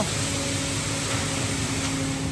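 Wet concrete sliding down a ready-mix concrete truck's chute and pouring onto the ground, a steady rushing noise, with a faint steady hum from the truck running.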